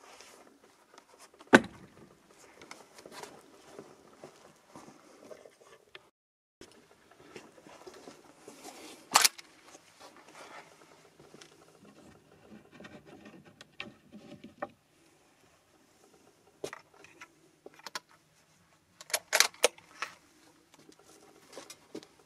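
Handling noise as a lever-action rifle and cartridges are readied at a shooting bench: rustling and light metallic clicks and clatter. There is a single sharp knock about a second and a half in, and a quick run of clicks shortly before the rifle is shouldered near the end.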